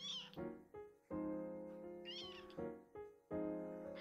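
Very young kitten mewing twice, short high-pitched cries, one right at the start and one about two seconds in, over background piano music with chords that change about once a second.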